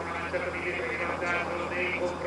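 Faint male speech over a steady low hum, from the broadcast commentary.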